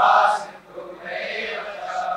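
A congregation quietly chanting back a Sanskrit prayer verse in response, many voices blending together without one clear pitch, fading briefly about half a second in.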